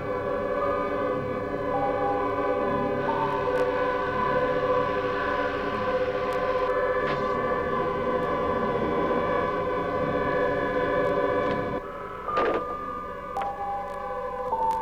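Horror film score of sustained, wailing chords whose notes shift in steps. Just before 12 seconds in the low end drops away and a sudden sharp sound cuts in.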